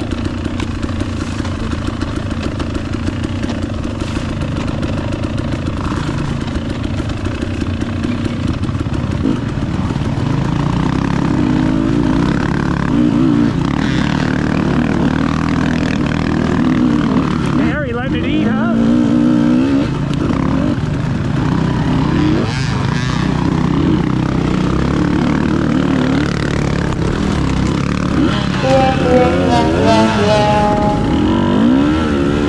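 Dirt bike engine running under constantly changing throttle on a wooded trail, its pitch rising and falling, with several quick revs climbing around the middle and near the end.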